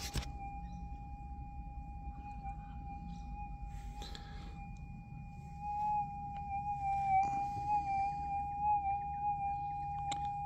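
Minelab GPX 6000 metal detector's steady threshold tone, which from about six seconds in wavers up and down in pitch as a hand passes soil over the coil: the detector responding to a small gold speck. A few soft knocks of handling are heard along with it.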